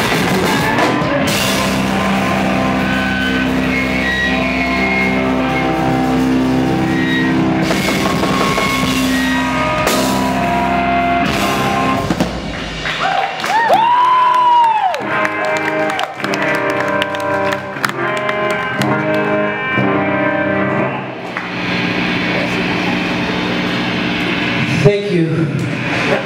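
Live rock band, electric guitar and drum kit, playing loudly through a club PA. About halfway through the heavy low end drops away, leaving ringing guitar with a note gliding up and back down. Sustained chords follow, and a sharp final hit comes near the end.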